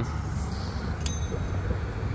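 Toys being handled in a cardboard box, with one short, light metallic clink about a second in, over a steady low outdoor rumble.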